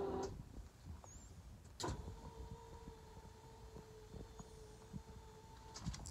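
Electric motor of a wheelchair-accessible van's powered transfer seat. A click about two seconds in, then a faint, steady motor hum for about four seconds that stops just before the end.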